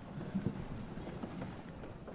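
A congregation getting to its feet from the pews: a jumble of shuffling with scattered low knocks, one sharper knock about half a second in.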